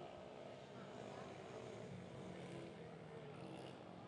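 Faint small-engine racing minibikes running at track speed, their engine pitch shifting as they ride through the corners.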